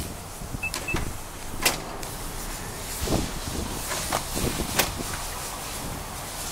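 Nissan E52 Elgrand's power sliding door opening: two short high beeps about a second in, then the door motor running steadily, with a few sharp clicks.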